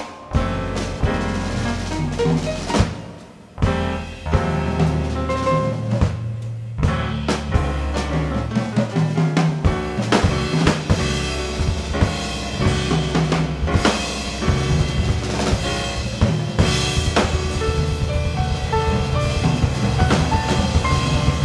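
Live jazz trio playing: drum kit with snare and cymbal strokes, over piano and electric bass.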